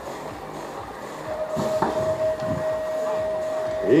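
BMX electronic start-gate cadence: a single steady beep held about two and a half seconds, with a sharp clack near its start as the start gate drops and the riders roll off down the ramp.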